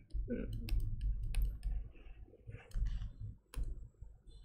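Computer clicking: several sharp clicks in quick succession about a second in, and one more near the end, as the screen is navigated to another page.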